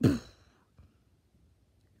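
A person's short sigh, falling in pitch.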